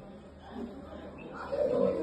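A man's voice pausing mid-talk: faint room noise, then a drawn-out hum-like vocal sound about one and a half seconds in.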